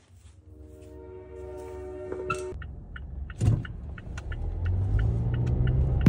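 A car's engine heard from inside the cabin, growing louder and rising in pitch through the second half as the car speeds up, with a single knock about halfway through. A steady held tone sounds over the first half.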